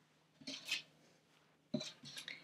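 Wooden-framed chalkboard being picked up and moved: a faint brief scrape about half a second in, then a light knock near the end.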